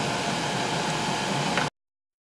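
Steady whooshing fan noise that cuts off abruptly to silence near the end.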